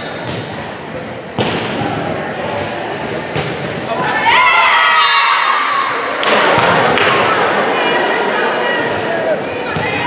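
Volleyball rally in an echoing gym: a few sharp smacks of the ball being hit, then high-pitched shouts from the players and cheering from the spectators as the point is won.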